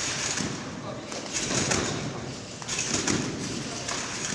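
Trampoline bed and springs rebounding under a bouncing gymnast: a burst of rushing, creaking spring noise with each bounce, three times about a second and a half apart.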